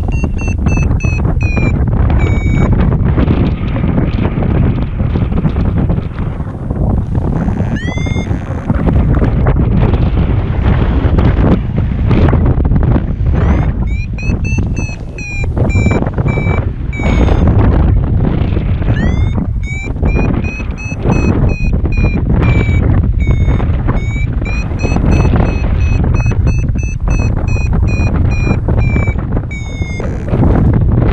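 Strong wind rushing over the microphone in paraglider flight, with a paragliding variometer beeping in spells of quick, high-pitched chirps, once at the start, again about halfway through and steadily through the last third. The rapid beeping is the variometer's signal that the glider is climbing in lift.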